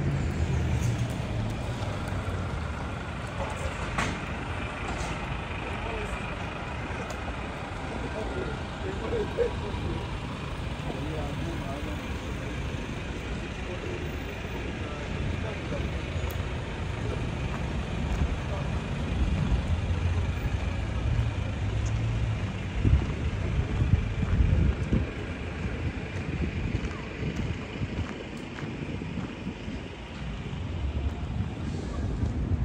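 City street traffic: a steady rumble of cars and vans on the boulevard, growing louder as heavier vehicles pass in the last third, with snatches of passers-by talking.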